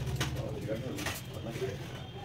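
A bird cooing in low, wavering calls, with two sharp clicks, one just after the start and one about a second in.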